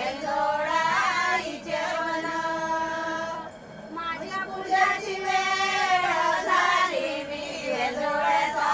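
Group of women singing a Marathi ovi (traditional grinding song) together in high voices, in long drawn-out notes, with a short breath break about halfway through.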